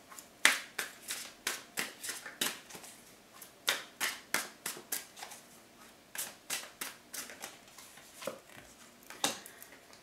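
A tarot deck being shuffled by hand: a run of sharp, irregular card slaps, several a second.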